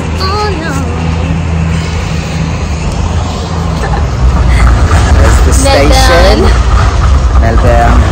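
City street traffic with a heavy vehicle's engine running steadily close by, a loud low hum, while voices talk over it now and then.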